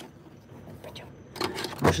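A faint background hush with a few small clicks, then a rustle and a woman's voice starting to speak near the end.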